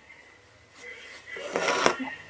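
Quiet room tone, then a short voice sound near the end.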